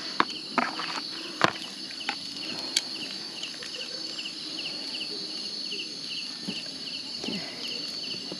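Night insects: a steady high-pitched drone with a chirping pulse about three times a second above it. A few sharp clicks from metal tongs on skewers and a plastic plate, the loudest about one and a half seconds in and again near three seconds.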